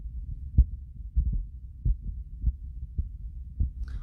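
Low rumble with about seven irregular soft thumps, the strongest about half a second in: handling noise of a hand-held phone's microphone.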